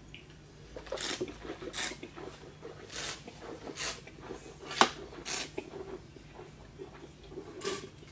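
A person tasting red wine, slurping it and drawing air through it in the mouth in a string of about seven short hissing sucks, the usual way of aerating wine on the palate while tasting.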